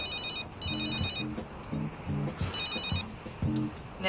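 A phone ringing with an electronic trilling ring: two short rings in the first second, then another about two and a half seconds in, over background music with plucked notes.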